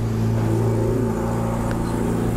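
A steady low mechanical hum with a rumble beneath it, holding one pitch throughout.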